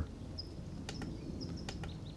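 Small birds chirping in short high notes, with a few light clicks in the second second as the light's control-box knob and buttons are worked.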